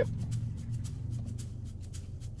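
Steady low hum in a car cabin, with a few faint light clicks from a donut being handled.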